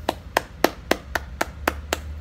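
Eight sharp finger snaps in a steady rhythm, about four a second.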